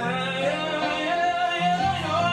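A song playing: a singer holds and bends one long note over sustained accompaniment.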